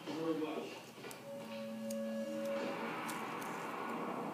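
Television sound in the background: a voice briefly near the start, then a held musical note for about a second and a half.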